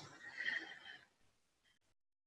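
A woman's faint, breathy voice trailing off in the first second, like a soft exhaled "mm". Then complete silence.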